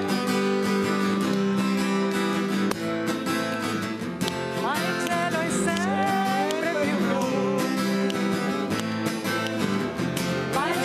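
Guitar strumming chords steadily, playing a song's accompaniment.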